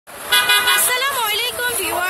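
A high-pitched voice that holds one steady note for about half a second, then slides up and down in pitch.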